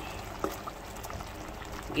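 Chicken and tomato-purée sauce bubbling in a pan over a high gas flame, as a steady soft noise, with a brief knock from the wooden spatula about half a second in.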